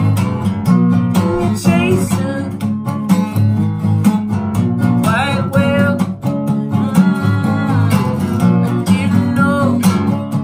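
Acoustic guitar strummed in a steady rhythm, with a man singing a few short improvised phrases over it.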